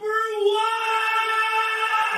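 Intro jingle: one long, high sung note held steady at a single pitch.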